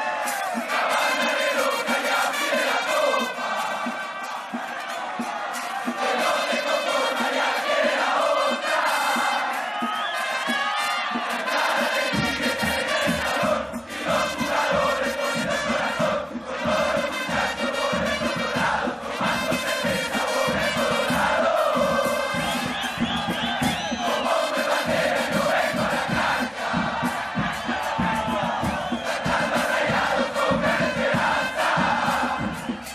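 A crowd of football supporters chanting and singing together in unison. About twelve seconds in, low bass-drum beats join the chant.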